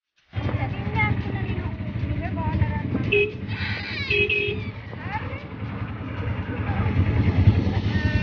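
Auto-rickshaw engine running as it drives, a low pulsing rumble, with voices talking over it. Two short beeps sound about three and four seconds in.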